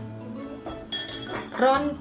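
A stainless steel mesh sieve set down on a glass mixing bowl, one sharp clink about a second in, over steady background music.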